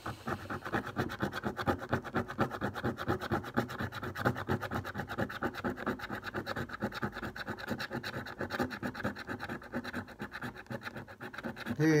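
A £5 scratchcard being scratched off by hand in quick, rhythmic back-and-forth strokes that rasp steadily on the card's coating.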